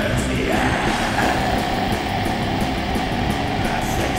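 Death metal band playing: distorted guitars, bass and drums, with one high note held from about half a second in.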